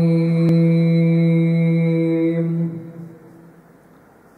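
A man's voice holding one long, steady chanted note that fades away about three seconds in, leaving faint room noise.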